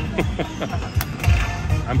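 Lightning Link slot machine's bonus-round sounds as the reels spin and stop: electronic game music over a low pulsing beat, with short falling tones and a sharp click about a second in.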